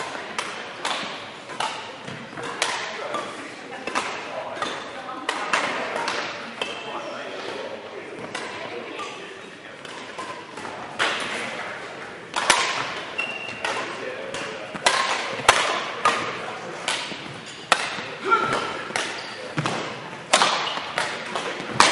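Badminton rackets striking a shuttlecock in rallies, a string of sharp hits that ring in a large hall and come thicker and louder in the second half. Short high squeaks of sports shoes on the court floor come between the hits.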